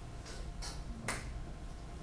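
Three short, sharp clicks, the last and loudest a little after a second in, over the steady low hum of a lecture room.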